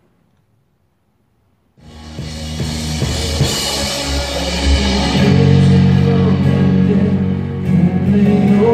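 Near silence for about two seconds, then a worship band starts playing: electric guitar with a drum kit and cymbals. The music swells over the next few seconds and then holds loud and steady.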